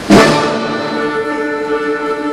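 Symphonic wind band hitting a sudden loud accented chord just after the start, then holding it as a sustained chord of several steady pitches.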